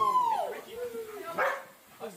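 A dog yipping and whining in short high calls, the first one falling in pitch, heard through a played-back video.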